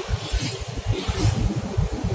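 Engine and road noise heard inside the cab of a moving small delivery truck: an uneven low rumble.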